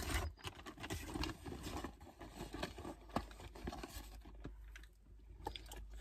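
Crumpled paper fast-food bag and wrapper crinkling and rustling as they are handled, in irregular rustles and small clicks that thin out towards the end.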